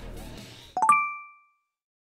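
Short chime sound effect: a quick run of a few rising bright notes about three-quarters of a second in, ringing briefly and fading out.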